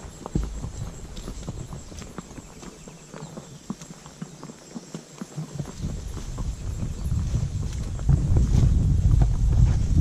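Horses' hooves clip-clopping at a walk on a dirt trail, heard from the saddle. From about halfway, a low rumble of wind on the microphone builds and grows loud near the end.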